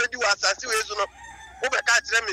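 A rooster crowing, one drawn-out call that starts about halfway through, alongside a man's talking.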